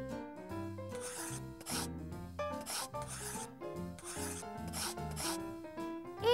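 Writing sound effect: about half a dozen short, scratchy strokes of a pen on paper as a word is written out, over light background music.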